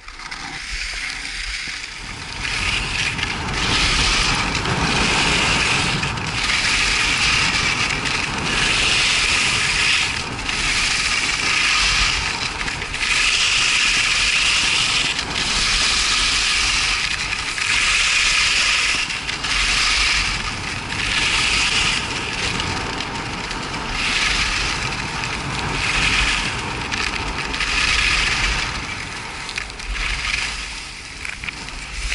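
Skis running down a groomed piste: a hiss of edges scraping the packed snow that swells with each turn, about every two seconds, with wind rumbling on the microphone.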